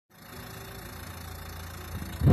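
A car engine idling: a steady low hum.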